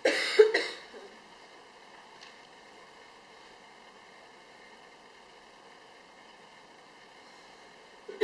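A cough: two quick bursts right at the start, followed by steady, low room hiss with faint steady hum tones.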